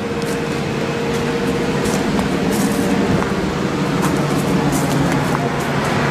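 A John Deere 5100E tractor's four-cylinder turbo diesel engine idling at a steady pitch, growing slightly louder over the few seconds, with a few faint clicks.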